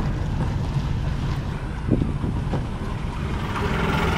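Steady low rumble of a vehicle travelling along an unpaved road, with wind noise on the microphone and a couple of small knocks about halfway through.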